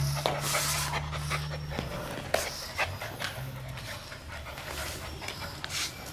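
German Shepherd puppies panting in quick breathy strokes, with a few sharp clicks in between. A low steady hum runs under it for the first couple of seconds.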